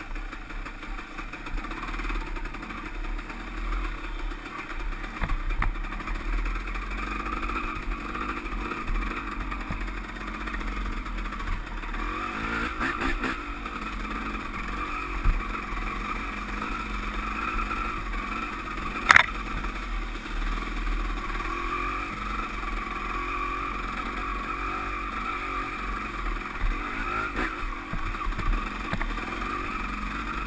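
KTM dirt bike engine running on a trail ride, the throttle rising and easing as the bike moves along, with chassis rattles and one sharp knock about two-thirds of the way through.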